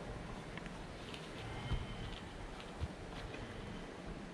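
Steady low rumble of wind on the microphone, with faint ticks and two soft thumps, one about one and a half seconds in and one near three seconds, from running-shoe laces being pulled and tied and a foot shifting on wooden decking.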